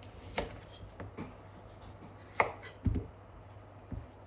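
Kitchen knife cutting through raw kohlrabi and knocking on a wooden cutting board: about six separate chops, the loudest about two and a half seconds in.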